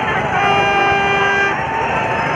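A single steady horn-like toot, about a second long, over the babble of a busy crowd.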